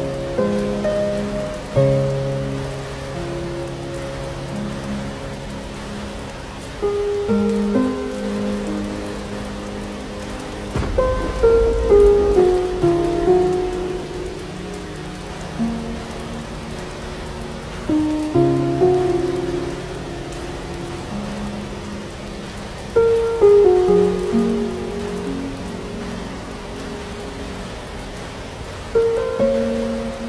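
Steady rain with slow, soft instrumental music laid over it, single melodic notes that sound and fade. About eleven seconds in there is a brief low rumble of thunder.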